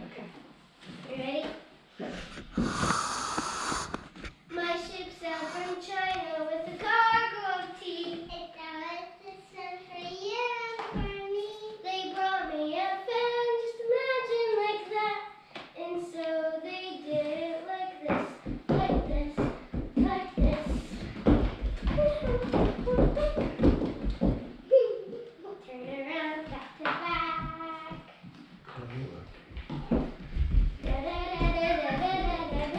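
Young girls singing a song together without accompaniment, in held, gliding notes. A brief hiss sounds about three seconds in, and past the middle the singing gives way to a run of rapid thumps for several seconds before the singing starts again.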